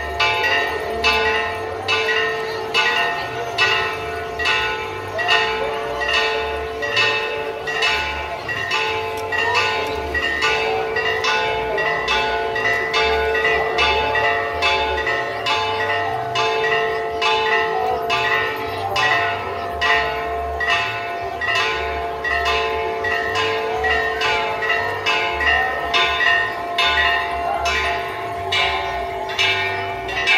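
Church bells ringing in a fast, steady run of strokes, about one and a half a second, each stroke ringing on into the next.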